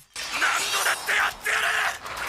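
Anime fight-scene soundtrack playing back: a noisy crashing, shattering sound effect mixed with a character's shouting and music.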